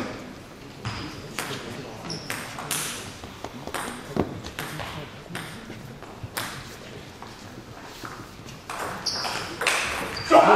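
Table tennis ball bouncing in a sports hall, a string of sharp, irregular clicks, with low talk behind.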